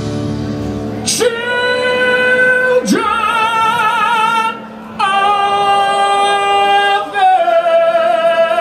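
Male rock singer holding long, high sung notes with vibrato through a live PA, four in a row, each about two seconds long. A strummed acoustic guitar chord rings out under the start.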